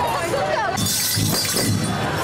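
Voices at first. Then, about a second in, a marching group's percussion comes in: rhythmic metallic jingling and rattling over regular low drum beats, a few beats a second.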